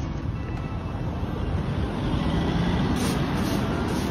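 Steady street traffic noise, a low rumble of passing vehicles, under background music. Near the end, repeated scratchy strokes of a stiff broom sweeping asphalt.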